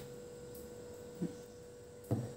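Quiet room tone with a faint, steady hum, and one brief soft sound a little over a second in.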